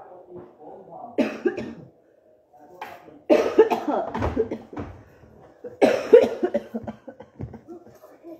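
A woman coughing in three bouts: a short one about a second in, then two longer, louder fits at about three and six seconds.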